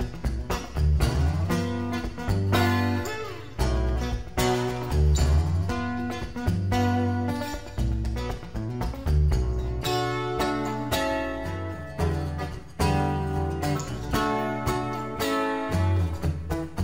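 Solo steel-string acoustic guitar playing a rhythmic instrumental, with deep bass notes under quick plucked and sharply struck upper notes. A note slides in pitch about three seconds in.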